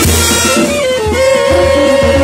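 Military brass band playing, with trumpets and a steady low drum beat under them; the brass settles into a long held note about halfway through, with hand cymbals and conga drums in the band.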